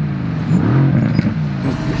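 Sports car engine accelerating, heard from inside the cabin, its note dipping and then climbing in pitch.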